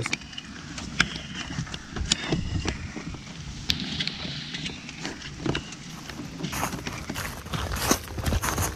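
Leather hiking boots being pulled on and laced: scattered light clicks and rustles of the laces and boot leather over a steady low rumble.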